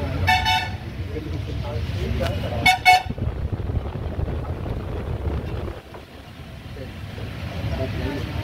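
Two short vehicle horn honks, the second about two seconds after the first, over a steady low rumble of background noise.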